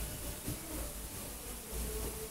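Handling noise from a handheld microphone being lifted and passed along: low, uneven rumbles and bumps over a faint steady hum.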